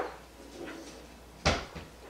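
A cupboard door shutting with one sharp thump about one and a half seconds in, after a fainter knock at the start.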